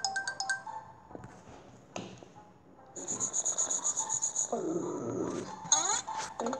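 Cartoon sound effects and music from a children's story app: a short run of chiming tones at the start, a fast high-pitched trill from about halfway in, then a low animal-like call near the end.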